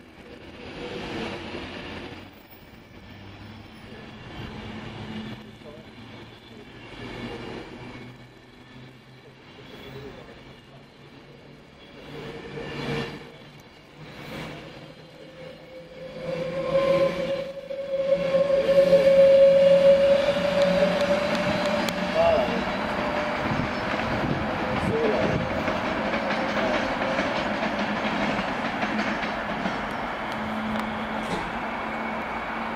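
A Class 390 Pendolino electric train rolling past slowly, its wheels clicking over rail joints every second or two. About halfway through, a steady tone rises slightly in pitch, and the running noise grows louder and stays loud.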